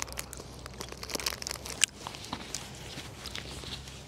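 Wrapper crinkling with small scattered crackles as a wrapped chocolate bar is handled and eaten.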